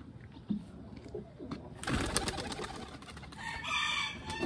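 A pigeon's wings clapping and flapping as it is released from the hand and takes off, a short burst about two seconds in. A drawn-out bird call begins near the end.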